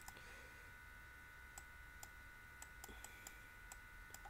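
Near silence: room tone with a faint steady electrical whine and about a dozen faint, scattered clicks of a computer pointing device used for on-screen handwriting.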